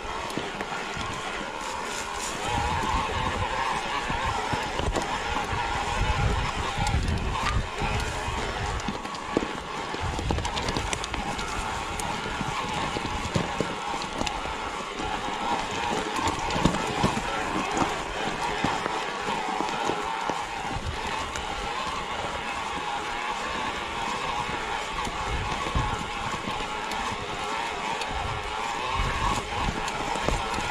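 Mountain bike climbing a rocky singletrack, its tyres crunching over loose stones and dirt, with irregular low knocks from the bumpy ground.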